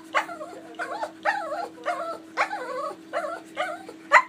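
Small dog 'talking': a string of about seven short, up-and-down grumbling calls, each under half a second, made while looking up at its owner and wanting something.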